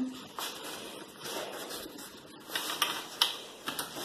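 Rustling and light clicking of playpen frame parts and fabric being handled and fitted together, with a few sharper clicks between about two and a half and three and a half seconds in.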